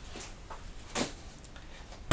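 Faint handling noise of a large cardboard shipping box being picked up, with two soft knocks about half a second apart near the middle.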